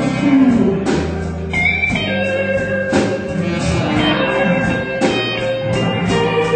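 Live blues band playing an instrumental stretch, electric guitar over bass, drums and keyboard, with long held notes ringing over the beat.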